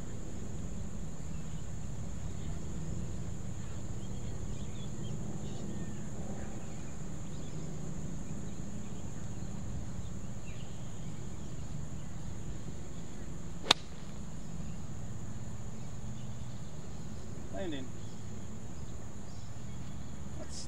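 A single sharp click about two-thirds of the way through: a golf wedge striking the ball on a full shot. The contact was "a little bit chubby", slightly heavy, so the ball came off with little spin. A steady high-pitched hum and a low outdoor rumble run underneath.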